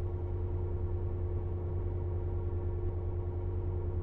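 Steady low machinery hum with a held higher tone over it, running evenly without breaks.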